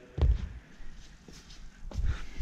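Footsteps on a concrete garage floor, with a dull thump just after the start and a sharp click near the end.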